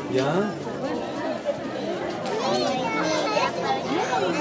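Overlapping chatter of several voices talking at once, a child's voice among them.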